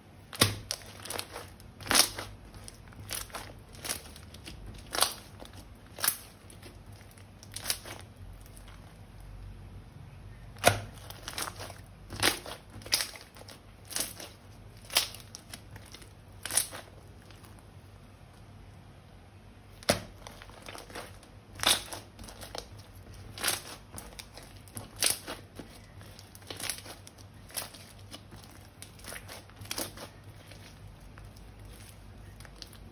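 Glossy glitter slime with small beads mixed in being stretched, folded and squeezed by hand, giving sharp sticky pops and clicks about once or twice a second as air pockets burst, with a quieter lull midway.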